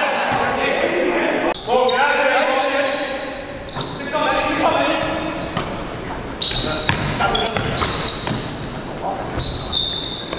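Basketball game sound in a large gym: a basketball bouncing on the hardwood court, with players' voices calling out in the hall.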